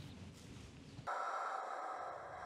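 Faint room tone, then about a second in an abrupt switch to a steady electronic sound-design drone of several held tones.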